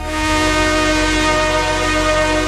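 Slowed-down, reverb-heavy electronic music: a sustained chord of steady tones over a deep bass drone, with a hissing noise wash swelling in at the start.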